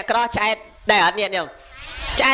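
Only speech: a monk preaching in Khmer into a microphone. His voice breaks off for two short pauses and draws out one syllable with a falling pitch.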